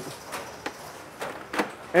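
A few light, sharp clicks and knocks, about four spread through two seconds, as hands handle the plastic and metal parts of an automated fin-clipping machine, over a faint steady hiss.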